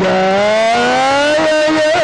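Egyptian Sufi inshad (religious chanting music): one long held note slides slowly upward in pitch for about a second and a half, then levels off and wavers near the end.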